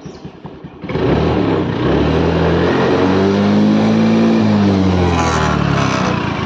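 Honda Dio scooter's single-cylinder four-stroke engine, warming up after starting, revved on the throttle. About a second in it gets louder and its pitch climbs slowly, peaks a little past the middle, and eases back down. The owner runs it to warm because the scooter has been giving trouble.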